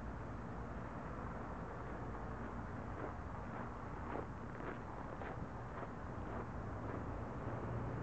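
Steady low engine hum with wind noise on the microphone. In the middle comes a run of faint short crunches, about two a second, like steps on snow.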